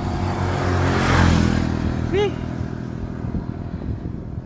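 Small motorcycle engine of a tricycle running steadily under way, with a rush of noise that swells and fades about a second in.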